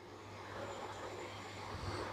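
Faint background noise with a steady low hum, slowly growing a little louder.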